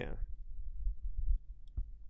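A man says "yeah", then a low rumble and a couple of sharp clicks from a podcast microphone being gripped and handled, the clicks coming near the end.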